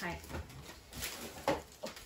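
A short spoken word and low voice sounds, with two brief sharp clicks about one second and one and a half seconds in, the second one the loudest.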